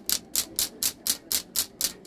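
Wooden bird flappers, a percussion effect for flapping wings, worked in a steady run of sharp wooden clacks, about four a second.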